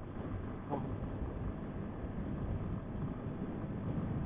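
Big Boy TSR 250 motorcycle engine running at a steady cruise, mixed with wind and road noise on the camera microphone. The bike is being held to moderate speed because it is still in its break-in period.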